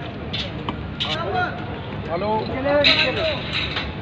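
People's voices talking in the background, with a few short clicks.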